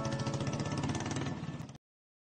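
Background music dying away over a Royal Enfield motorcycle engine idling in rapid, even low pulses. Both cut off abruptly near the end.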